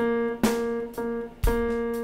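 Electronic keyboard striking one note four times, about half a second apart. It gives the pitch for the learner's turn in a hummed "mm, qué bueno" vocal warm-up.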